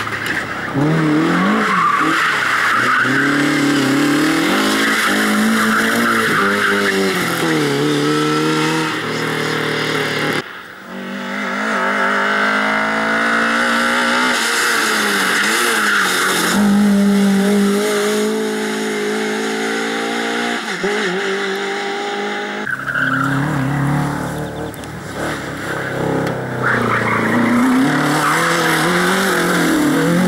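Rally cars driven hard: classic Lada saloons' engines rev up and drop back again and again between corners, with tyre noise as they slide, then a Mk1 Volkswagen Golf does the same near the end. The sound breaks off abruptly twice, about a third of the way in and again about three quarters in, where one car's run gives way to the next.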